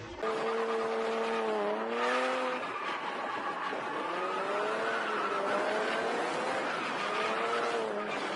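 Nissan 350Z drifting: its engine note rises and dips repeatedly with the throttle over a steady hiss of sliding, squealing tyres, starting abruptly just after the beginning.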